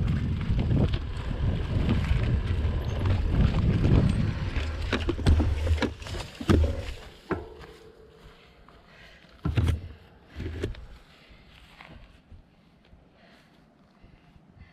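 Mountain bike rolling over a dirt singletrack, heard from the bike: rough tyre rumble with rattles and knocks from the bike. The rumble dies away about six seconds in as the bike stops, and two short thumps follow a few seconds later.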